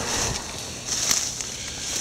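Dry brush and twigs rustling and crackling with scattered snaps, as someone pushes through cut undergrowth on foot.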